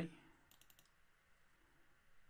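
A quick run of about five computer mouse clicks about half a second in, otherwise near silence.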